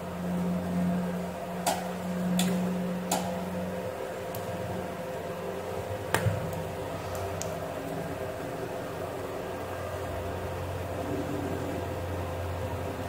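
Steady low hum from the workbench, with a handful of light clicks and taps as jumper wires are handled and pushed into a solderless breadboard. The loudest click comes about six seconds in.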